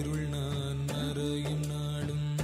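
Devotional mantra chanting set to music over a steady drone.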